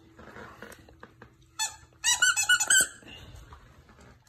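Squeaker inside a plush unicorn toy squeaking as a German shepherd chews it: one short squeak about a second and a half in, then a quick, loud run of high-pitched squeaks lasting under a second. Softer mouthing and rustling of the plush comes before the squeaks.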